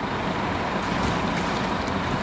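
Water poured from a plastic bucket splashing into a shallow plastic tub, starting about a second in, over a steady background rumble.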